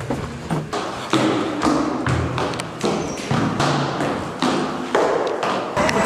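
Footsteps on a hard floor at a walking pace of about two steps a second. Each step echoes briefly in a concrete car park.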